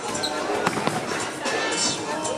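A bowling ball landing on the lane with a thud about a third of the way in, over background music and the hubbub of a bowling alley.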